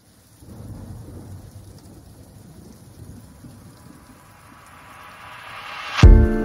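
Intro of a song: a low thunder-like rumble with a rain-like hiss begins after a moment of silence, then swells in a rising sweep near the end.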